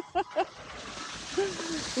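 Skis sliding and scraping over packed snow, a steady hiss that grows louder as the skier comes closer. Short bursts of laughter come at the start.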